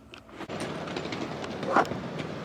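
Handheld camera noise while walking outside: rustling and wind on the microphone, with small knocks and one short louder sound near the end.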